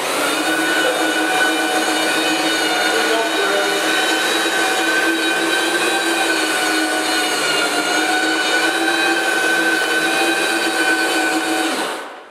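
Host Liberator dry-extraction machine with red scrub brushes running steadily while it is pushed across a tile floor through piles of Host cleaning compound. It starts abruptly and stops near the end.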